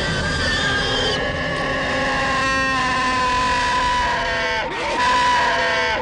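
Film soundtrack of layered, sustained droning tones, with a brief warbling pulse about two and a half seconds in and a shift in the tones near five seconds.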